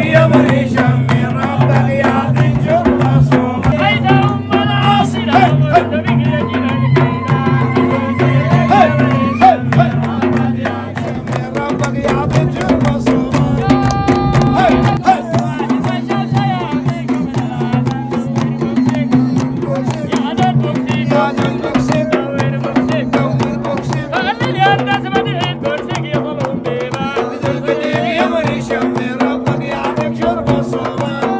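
Sufi dhikr music: men singing and chanting over a steady beat on a large handheld frame drum, with hand-clapping. The deepest part of the chant drops out about a third of the way through.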